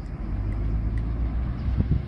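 Steady low hum of an engine running nearby, with no clear rise or fall.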